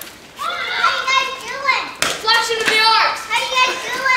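Children's high-pitched voices calling out and shrieking, without clear words.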